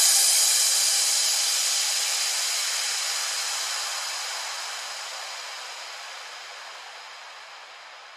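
Synthesized white-noise wash closing a trance track: a steady, mostly high-pitched hiss with no beat or melody, fading away slowly and evenly.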